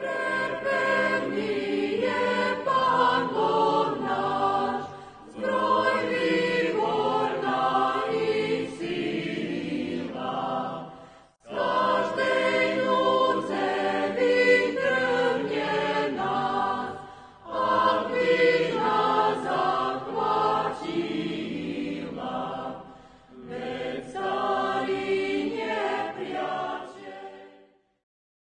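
A choir singing a sacred piece in five phrases of about five to six seconds each, with short breaks between them.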